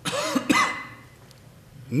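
A person coughing once, briefly, in the first second.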